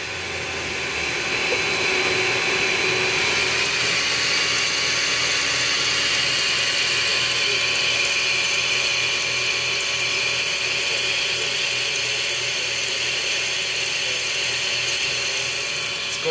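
CNC vertical milling machine cutting a titanium plate with flood coolant at 1200 rpm and about 2.2 inches per minute: a steady cutting noise with a thin high whine, which sounds just beautiful.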